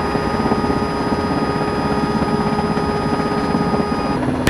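Mil Mi-17 helicopter heard from inside the cockpit in flight: the twin turboshaft engines and rotor drive give a steady whine of several tones over a fast, low beating of the rotor.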